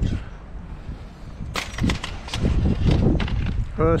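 A run of sharp knocks and clicks over a low rumble, starting about one and a half seconds in and dying away before the end.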